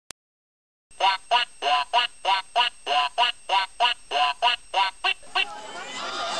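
A rapid run of duck quacks, about fifteen at roughly three a second, starting about a second in and stopping short near the end.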